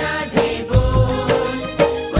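Hindi devotional bhajan music in an instrumental passage between sung lines: a steady drum beat under a held melody note.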